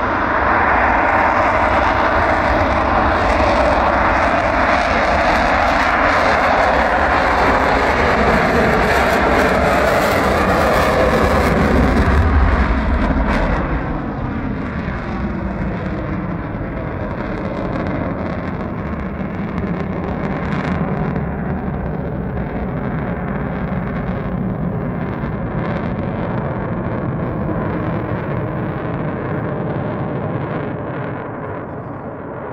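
F/A-18 Hornet's twin F404 turbofan jet engines at takeoff power during the takeoff roll and climb-out. The loud, steady jet noise peaks about twelve seconds in, then drops off and holds as the jet climbs away.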